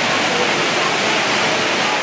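Steady, loud rush of water from the Rain Vortex, Jewel Changi Airport's indoor waterfall, pouring from the roof opening into its basin.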